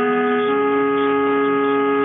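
Music from a 243 kHz longwave AM broadcast received on a software-defined radio: slow, sustained chords of long held notes, one note moving up about half a second in, with nothing above about 4 kHz.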